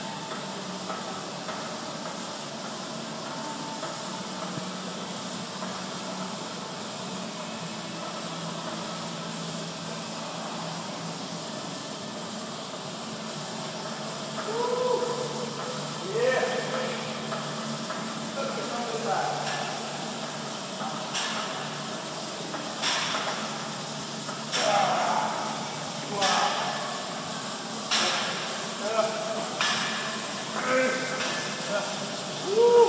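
Weightlifter straining through barbell dead squat reps: short voiced grunts, then sharp forceful breaths about every two seconds in the second half. A steady gym room hum runs underneath.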